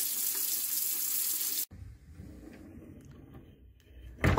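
Tap water running into a sink as a face is washed, a steady hiss that cuts off suddenly under two seconds in, leaving only a faint low hum.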